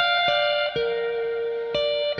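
Background music: a guitar playing single plucked notes, about four in two seconds, each ringing on.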